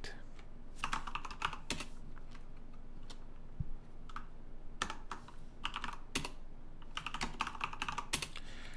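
Typing on a computer keyboard: short runs of quick keystrokes with pauses between them.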